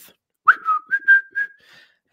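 A person whistling briefly: a quick upward swoop, then three or four short notes at a slightly higher pitch, fading out near the end.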